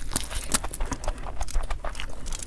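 Close-miked eating of biryani by hand: a quick run of wet chewing, lip-smacking and mouth clicks as a large handful of rice is stuffed in and chewed, with fingers squishing through the rice.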